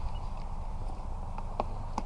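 Wind buffeting the microphone as a steady low rumble, with two or three short clicks in the second half.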